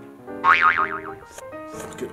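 Background music with a cartoon-style boing sound effect about half a second in, its pitch wobbling up and down as it falls.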